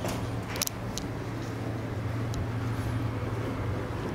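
A steady low mechanical hum, with two light clicks in the first second.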